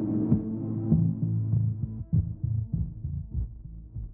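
Electronic music from a Reaktor Blocks modular patch: a sequenced bass line with drum hits, fading out over the last two seconds.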